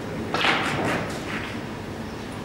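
Pool balls knocking on an 8-ball table: one sharp knock about a third of a second in, followed by a quick run of fainter rattling clicks that die away within about a second.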